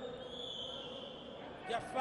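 Background noise of an indoor sports hall during a futsal match, with a faint, steady high tone lasting about a second in the middle. A man's voice comes in near the end.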